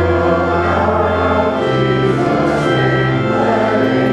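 Church organ accompanying a congregation singing a liturgical hymn, with sustained chords and the bass note changing every second or two.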